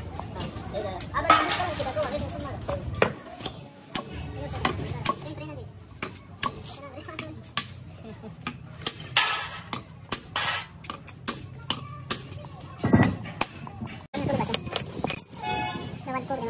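Repeated sharp metallic clicks and clinks of steel parts as valve springs and retainers are worked off an engine cylinder head, with a heavier thump late on.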